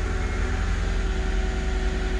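Mercedes CLK500's M113 V8 idling steadily, heard from inside the cabin. The accelerator pedal is pressed but the revs do not rise, the sign of a faulty accelerator pedal position sensor (fault code P0122).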